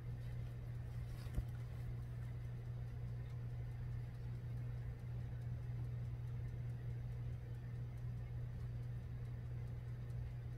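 A steady low hum of room tone, with one faint short tap about a second and a half in.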